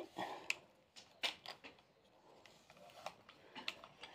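Faint rustling and scraping of long hair being worked with a heated styling brush, in several short, irregular strokes.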